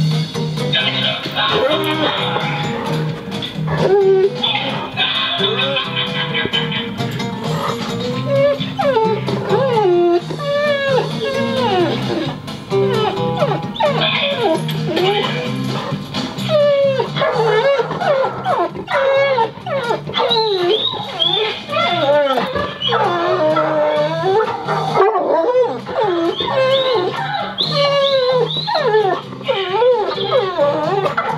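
An Airedale terrier whining and whimpering in a long string of high, rising and falling cries, sparse at first and coming thick and fast in the second half, over background music with a steady beat.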